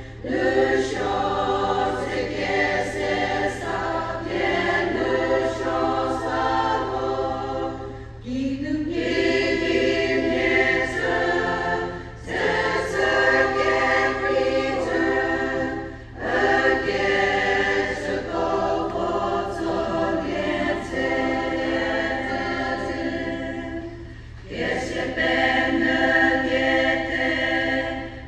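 Women's choir singing a hymn together, the song moving in long phrases with short breaks between them.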